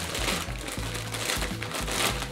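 A crinkly plastic snack bag of Nik Naks rustling and crackling as it is pulled open, over background music with a repeating bass beat.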